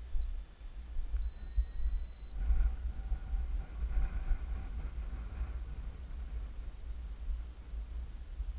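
Wind in gusts of 20 to 30 mph buffeting a head-mounted GoPro's microphone, a low, uneven rumble that rises and falls. About a second in, a faint high electronic tone sounds for about a second, and a fainter pitched hum follows in the middle.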